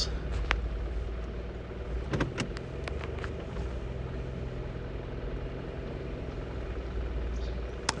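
A car moving slowly on a gravel road: steady low engine and tyre rumble, with a few light ticks about two to three seconds in.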